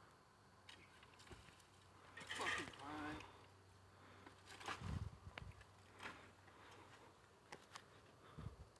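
A faint voice speaks briefly about two to three seconds in, with a few scattered clicks and low knocks afterwards.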